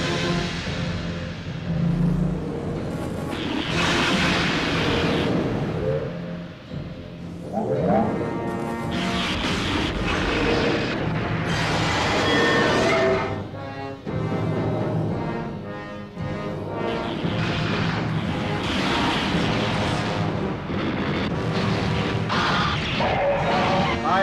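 Film score music mixed with booming blast and weapon sound effects, coming in several loud surges a few seconds long.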